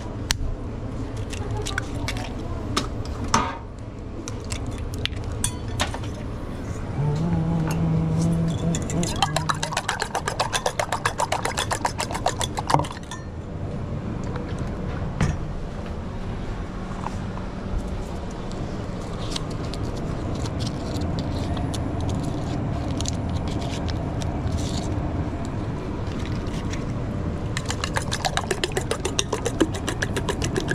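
Fork beating eggs in a small stainless steel bowl: a fast, even run of metallic clinks, once in the middle and again near the end. A few sharp knocks at the start come from eggs being cracked, and a steady low kitchen hum runs underneath.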